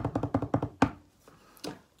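An improvised drum roll: rapid even taps, about ten a second, ending in a sharper final hit just under a second in.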